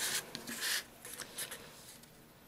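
A few short, dry scratching rubs against watercolour paper, the first two the loudest, from the sheet and brush being worked by hand.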